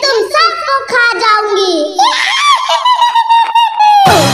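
A high-pitched cartoon character's voice crying out in short broken cries, then one long held wail over the last two seconds.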